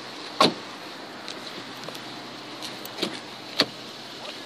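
A loud sharp thump about half a second in, then a few lighter clicks near the end as a car door is unlatched and swung open. The idling engine of the Chrysler 300, a quiet V6, hums faintly underneath.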